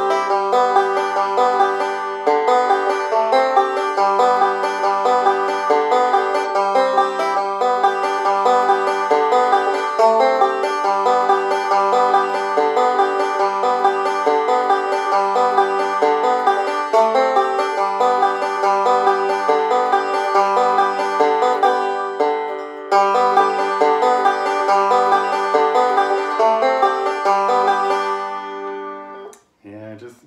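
Five-string open-back banjo played clawhammer style: a steady run of plucked notes and chords. The playing breaks off briefly a little past the middle, picks up again, and dies away near the end.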